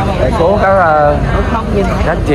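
People's voices in an outdoor crowd, with one voice clearly in front, over a steady low rumble.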